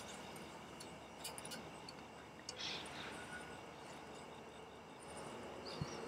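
Faint crickets chirping in the background, with a few soft clicks and a brief rustle as a rag wipes an engine oil dipstick.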